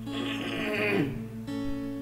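Steel-string acoustic guitar strumming a G major chord that rings on, re-strummed about one and a half seconds in. A cough breaks in over the chord during the first second.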